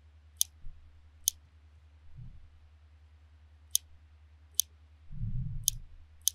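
A computer mouse button clicking about five times, single sharp clicks a second or more apart, as line ends are placed while sketching an outline in a drawing program. A faint steady low hum runs underneath, and there is a soft low rustle near the end.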